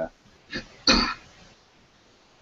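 A person clearing their throat: a short sound about half a second in, then a louder, harsher burst about a second in.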